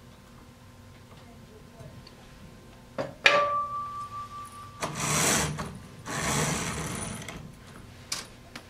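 Bead chain of a clutch-operated roller shade being pulled through the clutch, rolling the shade, in two spells of rapid rattling. Just before them comes a sharp knock with a short ringing tone.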